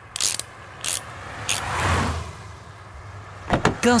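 Cartoon sound effects: three short clanks of a wrench on a car's wheel nut, about two-thirds of a second apart, then a rush of car noise that swells and fades away.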